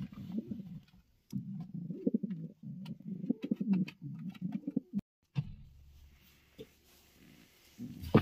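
Racing pigeons cooing in a breeding box: several rolling coo phrases over the first five seconds, with a few light taps, then only faint sound after a brief break.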